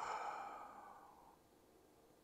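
A man's long voiced sigh, steady in pitch and fading out over about a second and a half.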